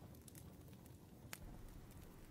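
Faint fireplace crackle: a few sharp pops over a soft steady hiss.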